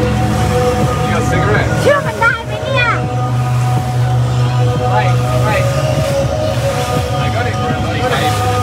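Speedboat engine running at speed with a steady low drone, music playing over it, and a short excited shout about two seconds in.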